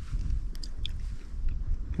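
A person chewing pinyon pine nuts, with a few faint small clicks, over a low rumble.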